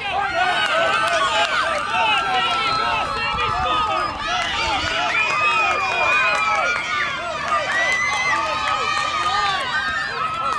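Softball spectators and players shouting and cheering at once, many high voices overlapping while runners circle the bases, with a long high yell about five seconds in.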